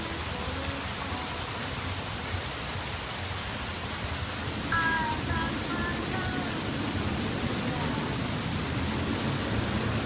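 Steady outdoor background noise with indistinct voices, a little louder from about five seconds in, when a few short high chirps come through.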